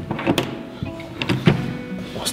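Metal lever door handle being pressed down and worked, its latch clicking and rattling several times.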